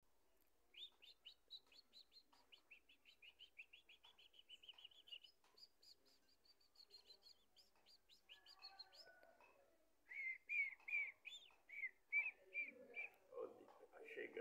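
Birds chirping faintly: a quick run of short high chirps, about five a second, for most of the first nine seconds, then from about ten seconds in louder, lower chirps about twice a second.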